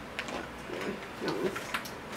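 Hard shells of cooked whole crabs clicking and clacking as they are handled and picked from the pile, a few sharp clicks with two close together near the end, and a faint voice murmuring in between.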